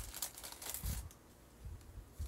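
Plastic snack packet crinkling and rustling as it is handled, dense for about the first second, then giving way to a few soft low bumps.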